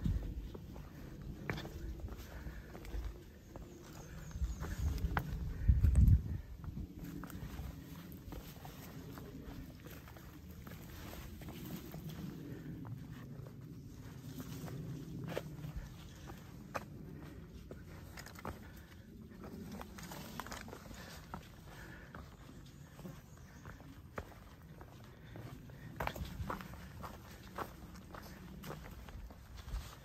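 A hiker's footsteps on rock and dry leaf litter, with frequent short sharp clicks of steps on stone. There is a loud low rumble at the very start and a louder one about six seconds in.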